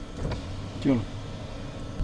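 Low, steady rumble of a car engine running close by, with one short human voice sound falling in pitch about a second in.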